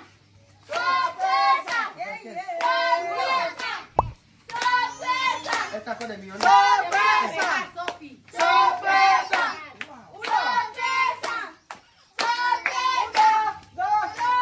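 A group of voices, children's among them, chanting in short repeated phrases with hands clapping. There is a sharp knock about four seconds in.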